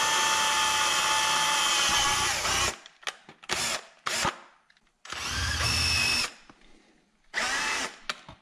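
Cordless drill with a quarter-inch bit boring through a closed-cell molded foam handguard cover. The motor runs at a steady pitch for nearly three seconds and stops. A few short trigger blips follow, then two more runs of about a second each, the last near the end.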